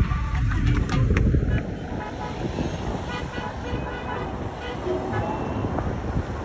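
Vehicle horns honking amid steady traffic noise from a slow line of cars, with a heavy low rumble in the first second and a half.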